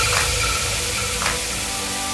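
Edited reveal sound effect: a hissing noise tail that slowly fades, with faint held tones and a soft tick about once a second.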